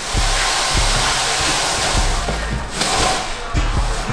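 A plastic-wrapped barber chair being dragged and shifted across the floor: a continuous scraping, rustling noise that eases off after two to three seconds. Background music with a steady beat runs underneath.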